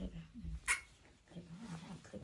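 A baby macaque gives one short, high squeak about two-thirds of a second in, over a soft, low human voice.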